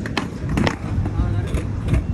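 Skateboard wheels rolling over tiled paving stones with a low rumble, broken by a few sharp clacks of the board striking the pavement as a trick is attempted and the board comes down.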